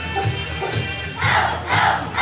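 A group of children playing Boomwhackers, tuned plastic percussion tubes, in a quick run of hollow pitched taps, with a loud burst of group voices calling out in the second half.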